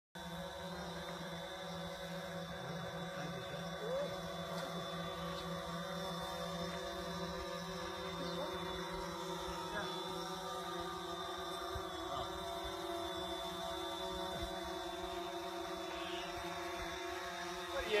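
Small quadcopter drone hovering low, its propellers giving a steady many-toned hum that shifts slightly in pitch now and then.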